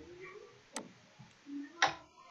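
Two sharp computer-mouse clicks about a second apart, the second louder, made while selecting and dragging items on screen.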